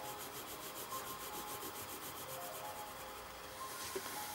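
Pencil shading on paper: graphite scratching across the sheet in rapid, regular back-and-forth strokes.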